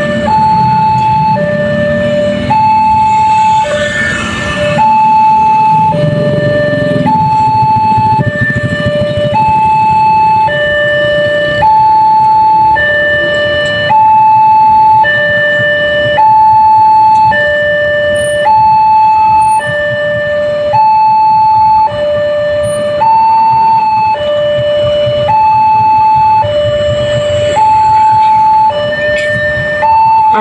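Railway level-crossing warning alarm on a Wantech signal, sounding an even two-tone high-low call, each tone held just under a second, while the barriers close. Car and motorcycle engines idle underneath.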